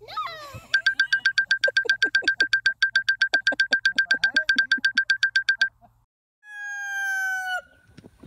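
Electronic beeping added as a sound effect: a fast, even string of high beeps, about nine a second, for some five seconds, then after a short gap one long tone that slides down in pitch and cuts off. A brief gliding squeal comes just before the beeping starts.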